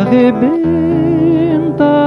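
A male singer holding a long note with vibrato, then moving to a new note near the end, over nylon-string classical guitar accompaniment.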